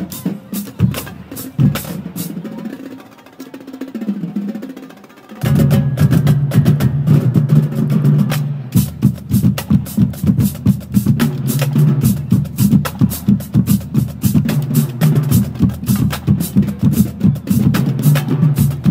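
Marching drumline of snare drums, multi-tenor drums, pitched bass drums and crash cymbals playing a fast cadence. The playing drops to a quieter passage a couple of seconds in, then the full line comes back in loud about five seconds in with rapid, driving strikes.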